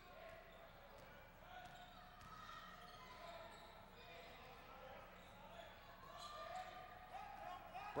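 Faint sound of a basketball game in play in a gym: a ball bouncing on the hardwood floor and scattered voices from players and crowd.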